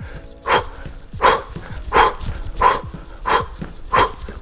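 A man's hard, rhythmic exhalations, six sharp huffs about three every two seconds, in time with fast hopping mountain climbers; he is getting out of breath from the cardio effort.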